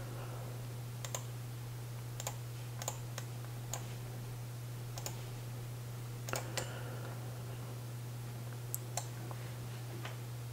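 Irregular, scattered clicks of a computer mouse and keyboard, about a dozen in all, some in quick pairs, over a steady low hum.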